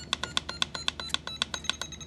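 Trim button on a Blade mSR radio transmitter pressed rapidly, about eight or nine clicks a second, each click with a short electronic beep that steps higher in pitch. Near the end a longer, higher steady beep sounds: the trim has reached its limit and will go no further.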